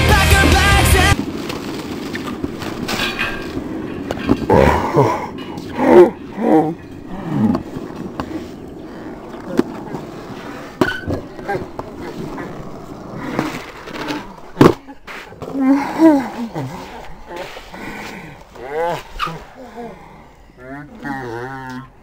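Skateboards on rough concrete, with several sharp clacks of boards hitting the ground amid voices and laughter. Loud music cuts off about a second in.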